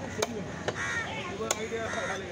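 Heavy knife blade chopping through fish onto a wooden stump chopping block: three sharp chops at uneven intervals, over background voices.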